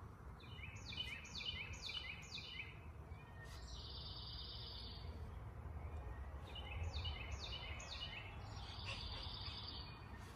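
A songbird singing: two runs of four quick down-slurred notes, each followed by a flat buzzy trill, over a steady low background rumble.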